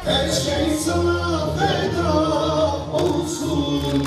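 Music with singing: a sung melody over a steady low bass line.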